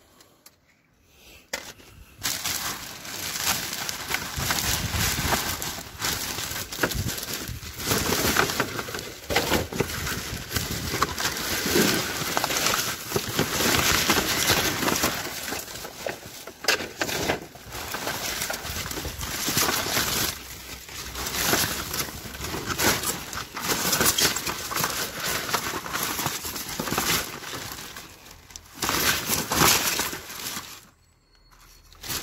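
Plastic trash bags crinkling and rustling as they are handled and pulled about, a dense, irregular crackle that starts about two seconds in.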